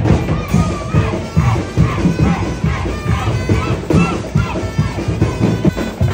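Street parade band music: a steady drumbeat with cymbals, about two beats a second, under a wavering melody, with crowd noise beneath.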